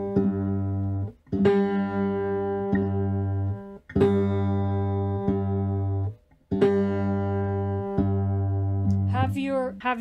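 Fretless three-string cigar box guitar being fingerpicked: the thumb keeps a steady bass note going while the fingers take turns plucking the higher strings, each note left to ring. A woman starts speaking near the end.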